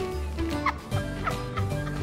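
Background music with a steady repeating bass line, with a few short, high squeaky sounds of sliding pitch over it about half a second in and again around a second and a half in.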